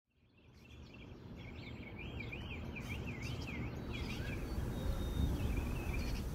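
Outdoor ambience fading in from silence: a bird sings a run of quick repeated swooping notes, about three a second, over a low rumble that grows louder.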